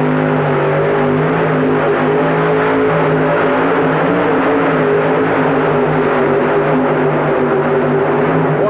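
Four-engine modified pulling tractor (Papa Bear 3) running flat out under load as it drags a weighted sled down the track: a loud, steady engine note that holds one pitch throughout.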